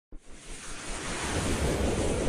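Whoosh sound effect for an animated title intro: a rush of noise that swells steadily louder.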